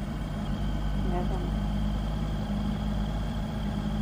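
Yamaha MT-09 Tracer motorcycle's three-cylinder engine running steadily at low speed, with a faint steady high whine above it.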